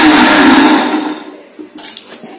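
Electric mixer grinder running with horse gram seeds in its steel jar, then switched off about a second in and spinning down. A few light clicks near the end.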